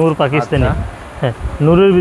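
A man's voice says a few quick words, then a low rumble follows. About a second and a half in, the voice holds one long, steady note.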